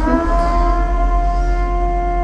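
Music: one long held note, steady in pitch, over a low hum.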